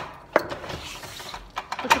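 A key being pushed and turned in a door lock, making a few sharp clicks: one about a third of a second in and a quick cluster near the end.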